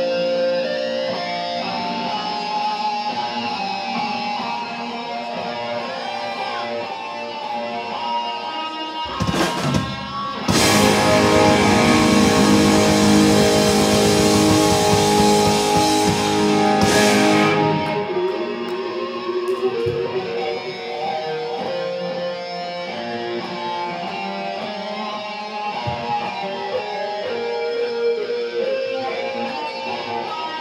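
Live rock band playing on electric guitars, with sustained ringing guitar lines. About a third of the way in the whole band comes in much louder and fuller for several seconds, then drops back to the guitars.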